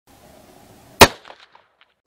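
A single rifle shot about a second in: one sharp report that dies away within a fraction of a second, followed by a few faint echoes.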